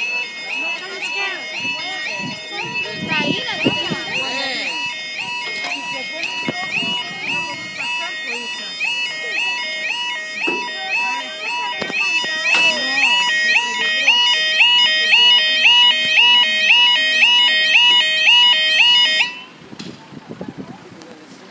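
British level crossing yodel alarm sounding as the crossing's warning sequence starts: a loud, rapid two-tone warble repeating about two and a half times a second. It cuts off suddenly near the end.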